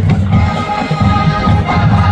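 Music with a steady low beat and held tones.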